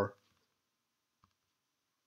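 A single faint computer mouse click about a second in, against near silence.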